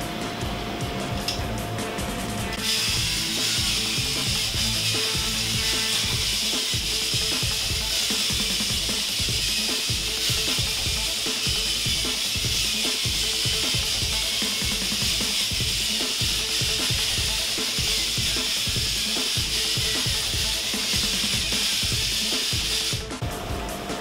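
Thames & Kosmos GeckoBot toy robot's small electric motor and plastic gearing running as it walks on its suction-cup feet, a steady mechanical whir that starts a couple of seconds in and stops near the end. Background music plays under it.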